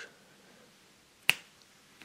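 A single sharp click about a second and a quarter in, with faint room tone around it.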